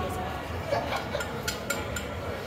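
Indistinct chatter of voices echoing in an ice arena, with a few short, sharp clicks in the second half.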